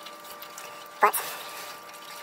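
Thin stream of old automatic transmission fluid trickling from the rear drive unit's drain hole into a drain pan, faint against a steady background hum.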